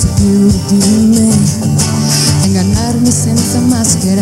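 Live pop song played by a band with acoustic guitar and backing singers, with a lead vocal line, steady and loud throughout.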